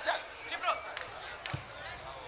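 A football being kicked, a short thud about one and a half seconds in, among fainter knocks, with shouting voices on the pitch around it.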